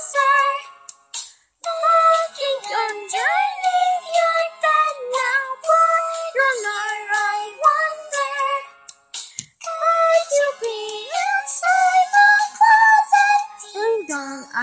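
A high singing voice over backing music, its notes sliding up and down between held pitches. It breaks off briefly about a second in and again about nine seconds in.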